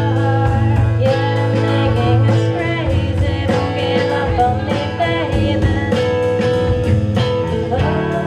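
Live band playing a song: a drum kit keeping a steady beat, electric guitar and keyboard, with a woman singing the melody.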